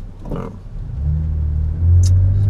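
Car engine pulling away from a stop. A low, steady hum comes in about a second in and rises in pitch near the end as the car gathers speed.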